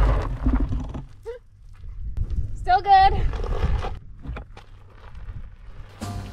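Fat-tyre electric bike skidding and going down on a loose gravel trail, a low rumble in the first second, then a woman's brief high-pitched cry about three seconds in, followed by scattered knocks and crunches of gravel.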